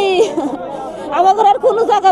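A woman's high, tearful voice, speaking in sobbing, wailing tones, her pitch held and breaking between words.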